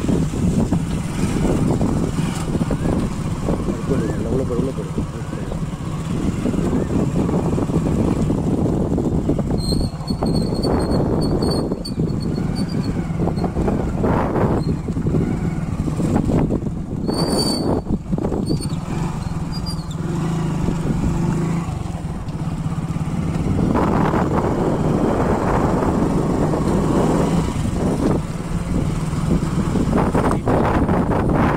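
Engine of a moving vehicle running steadily, heard from on board with a constant low hum, while people talk over it.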